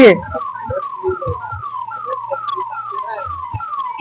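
An electronic siren or alarm repeating a short falling tone about three times a second, steady in loudness.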